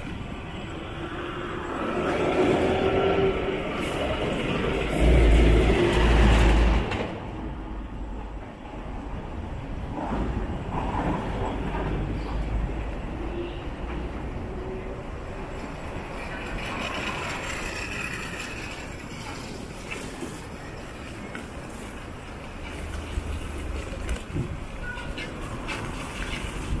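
Road traffic noise heard while moving along a street. A vehicle grows louder about two seconds in and fades by about seven seconds, with heavy low rumbling around five to seven seconds.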